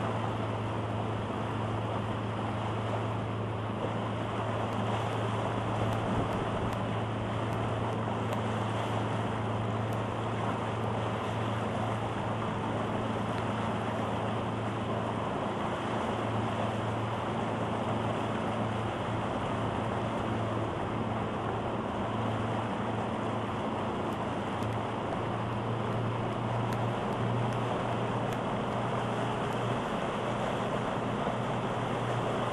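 Boat outboard motor running at a steady cruising speed, a constant low hum, with the rush of water along the hull and wind on the microphone.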